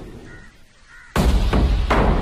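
A crow cawing faintly twice over quiet jungle ambience. About a second in, a sudden loud low hit breaks in and runs on as heavy, drum-driven film score.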